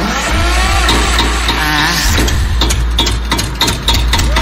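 Bhojpuri DJ remix beat with a heavy booming bass and regular hi-hat ticks. Over it, a rising engine-like revving sound effect climbs in pitch over the first two seconds.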